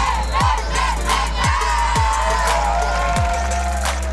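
Background music with a heavy kick drum about every half second, mixed with a group of voices shouting and cheering in celebration.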